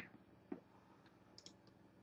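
Near silence with a few faint, short clicks from a computer mouse: one about half a second in and a couple more near the middle.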